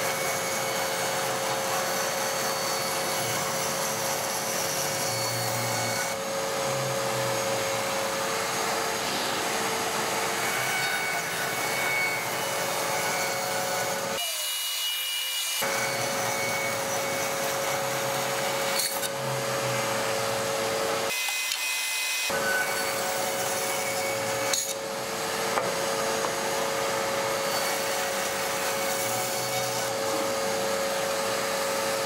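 Bandsaw running with a steady hum while its blade cuts through a wooden board being ripped into bowl blanks. The lower sound drops out briefly twice.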